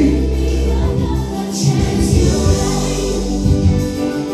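Gospel worship music: a choir singing over a steady, strong bass line.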